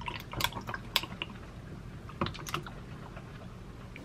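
Ice cubes in a tall drinking glass clicking and crackling in irregular sharp ticks as cold almond milk is poured over them, with a faint trickle of the pour.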